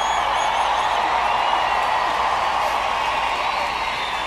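Large stadium concert crowd screaming and cheering in a steady roar, with shrill individual screams and whistles gliding above it.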